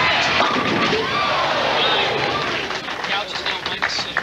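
Bowling ball crashing into a rack of tenpins, with crowd cheering and shouting over it. The crowd noise eases after about three seconds.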